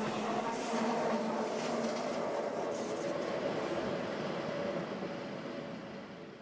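Rail running noise of trains on the move, as an ICE passes alongside: a steady noise with a faint hum, fading out near the end.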